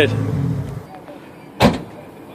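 2002 Camaro SS's LS1 V8 idling through an SLP Loudmouth 2 exhaust, a steady low rumble that dies away less than a second in. A single sharp thump follows a little past halfway.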